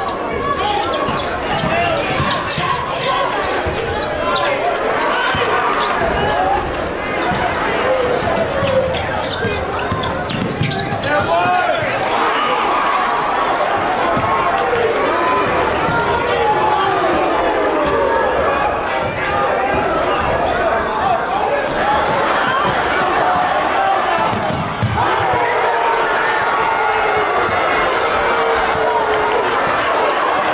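Basketball being dribbled on a hardwood gym floor during live play, with spectators' and players' voices throughout. The sound rings in a large hall.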